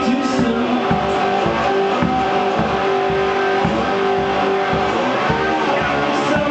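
A homemade wine box guitar playing blues, with notes held and ringing, over a low thumping beat about twice a second.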